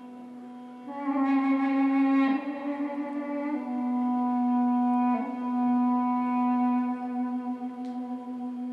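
Two Armenian duduks play together. One holds a steady low drone while the other plays a slow melody that changes note, swelling louder about a second in.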